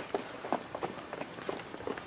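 Footsteps of people running, a quick uneven patter of thuds, several a second.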